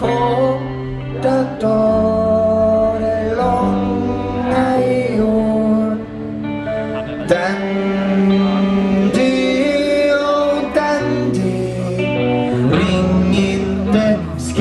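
Live rock song: a man singing over electric guitar and a band, with held low notes that change every second or two.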